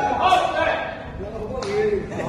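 Men's voices talking and calling out, with two short sharp sounds, one near the start and one near the end.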